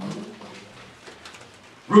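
A short, low hummed 'mm' from a voice at the start, then a hushed room with a few faint clicks before speech resumes.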